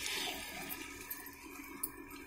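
Besan-battered taro-leaf pakora sizzling in hot oil in a kadhai as it is dropped in; the hiss is loudest at first and dies down.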